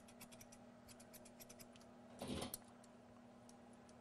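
Thinning shears snipping at a dog's coat: a run of faint, quick snips, several a second, with a brief louder noise a little past the middle.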